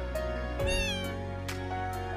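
A kitten gives one short, high meow about half a second in, over background music with a steady beat.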